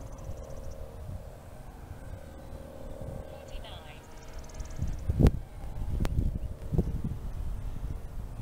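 Faint steady drone of a distant electric RC warbird's motor and propeller, under wind rumble on the microphone. A few sharp knocks come in the second half, the loudest about five seconds in.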